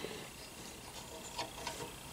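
Faint small clicks of metal tube clamps and spacers being handled and fitted onto a motorcycle center stand's tube, with two soft ticks in the second half over quiet room tone.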